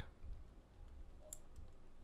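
Faint, scattered clicks of a computer keyboard being typed on.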